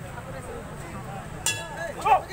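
A boxing ring bell struck once about one and a half seconds in, a short metallic clang marking the end of the round, over the steady chatter of spectators.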